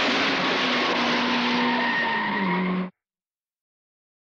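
A car skidding through deep water: a loud, steady rush of spray with an engine note underneath. The sound cuts off abruptly just under three seconds in, followed by dead silence.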